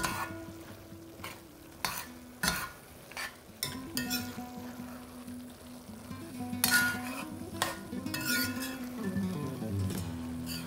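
A metal spoon stirring and scraping cubed meat and chorizo coated in dry spices around a red enameled cast-iron Dutch oven, the meat sizzling as it fries. Several short scrapes come through, the loudest about seven seconds in.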